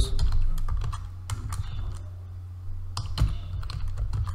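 Computer keyboard being typed on: a scattered run of key clicks at an uneven pace, over a steady low hum.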